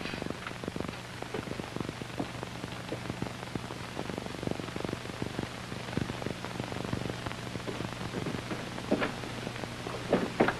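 Steady hiss and crackle of an old 1940s film soundtrack with a low steady hum. Scattered faint clicks and knocks run through it, with no speech.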